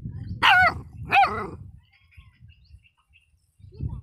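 Marwari shepherd puppy giving two high-pitched yapping barks in quick succession about a second in, over a low rumble, with a short low sound near the end.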